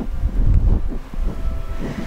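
Low rumble with soft irregular thuds from a handheld camera being carried through a carpeted room: handling noise and footsteps, loudest about half a second to a second in.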